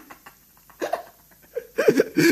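A man laughing to himself in short bursts, with a quiet pause before more laughter toward the end.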